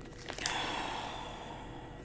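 A long sniff through the nose into a plastic bag of wax melts. It starts about half a second in and fades away slowly.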